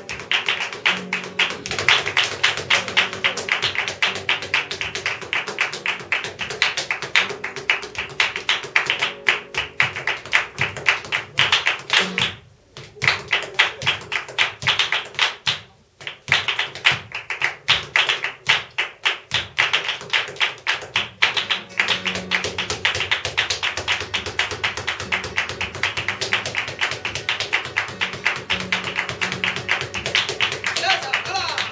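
Flamenco zapateado: a dancer's rapid heel-and-toe stamping in flamenco shoes, with hand-clapping palmas. The stamping breaks off briefly twice around the middle.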